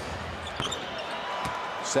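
Arena crowd noise under a basketball bouncing on the hardwood court, a few sharp knocks with the loudest about one and a half seconds in.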